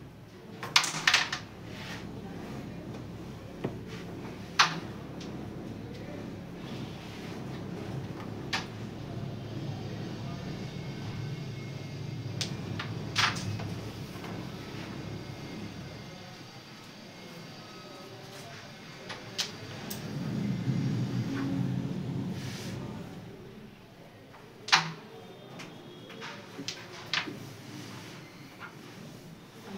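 Carrom break shot: the striker is flicked into the centre stack and a quick burst of sharp clacks follows as the wooden coins scatter, about a second in. Single sharp clacks of further striker and coin hits come at intervals after it.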